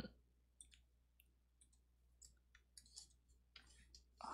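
Near silence with a scattered handful of faint, short clicks from a computer mouse and keyboard.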